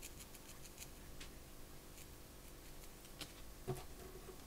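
Felting needle stabbed again and again into one spot of a small ball of wool felt, working an opening for the felted body's stick: faint quick pokes, several a second at first and sparser later, with one louder knock near the end.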